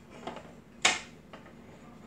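A small decorative sign being handled on a countertop and set against its stand: one sharp knock about a second in, with a few faint taps around it.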